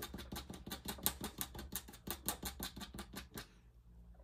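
Ink pen nib scratching across paper in quick, even flicking strokes, about eight a second, stopping about three and a half seconds in.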